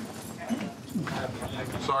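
Indistinct voices: low, scattered talk with a couple of short sliding vocal sounds.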